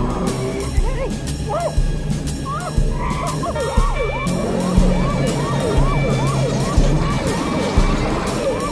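Police car sirens yelping in quick rising-and-falling sweeps, several a second, over an action film score with a heavy beat about once a second.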